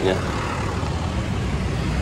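Street traffic: motor scooters and a light truck driving past close by, a steady low engine noise.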